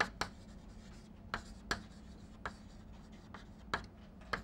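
Chalk writing on a chalkboard: a series of short, sharp taps and scratches as letters are formed, about seven strokes in four seconds, irregularly spaced, over a faint steady hum.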